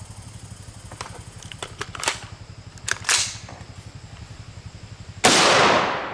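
Metallic clicks and clacks of an AR-15's action being worked by hand after a light primer strike, then a single loud 5.56 NATO rifle shot about five seconds in, ringing out as it fades.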